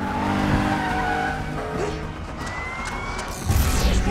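Car-chase sound mix: tyres squealing and engines running hard as cars take a sharp turn at speed, over a film score. A rising whine comes in past the middle, and a heavy low rumble comes in near the end.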